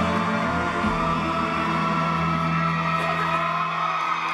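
Live concert music: a band plays long held chords at a steady loud level, with crowd shouts over it.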